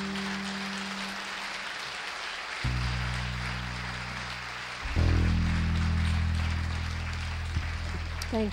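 Audience applauding as the band's last chord fades out. Low sustained instrument notes come in under the clapping about two and a half seconds in, break off, and return louder about five seconds in.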